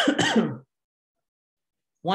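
A man clearing his throat: two short, loud bursts in quick succession at the very start.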